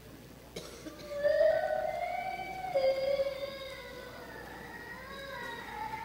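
An organ begins playing about a second in, holding slow sustained chords that move in steps from one chord to the next. A short knock comes just before it.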